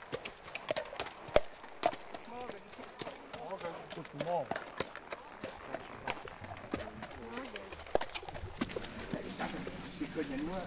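Horses' hooves clopping at a walk on a dirt forest track, in irregular sharp clicks as the riders pass close by. Faint voices are heard between the hoof beats.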